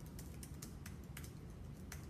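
Faint typing on a computer keyboard: a string of irregular key clicks as a web search is typed in.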